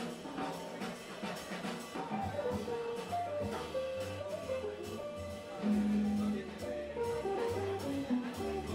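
A jazz band plays live: a run of piano notes over upright bass and drums, with one louder held low note about six seconds in.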